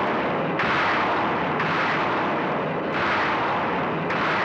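Loud, harsh rushing-and-rumbling sound effect for the city's power being drained as its lights go out, starting afresh in sudden surges about every second or so.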